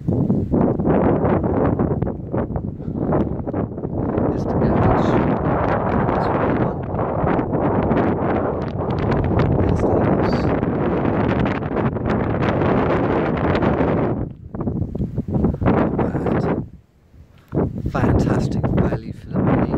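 Gusty wind buffeting the microphone: a loud, uneven rush of noise that rises and falls with the gusts, dropping away for a moment about a second before the end and then coming back.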